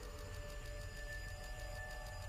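Quiet online slot-game background music of a few steady held tones over a low hum, the game's ambient bed while the free-spins gamble wheel is in play.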